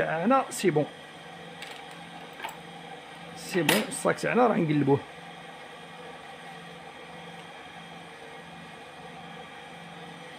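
Brief speech twice, at the start and about four seconds in, over a steady low hum.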